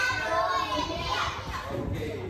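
Several children's voices speaking at once in a classroom, trailing off.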